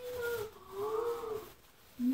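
Two drawn-out animal calls, each rising and falling in pitch, the second longer.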